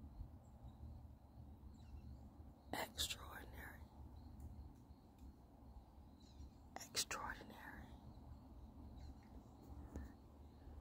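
Two brief breathy, whispered vocal sounds from a woman, about three and seven seconds in, over a quiet background with a low steady rumble.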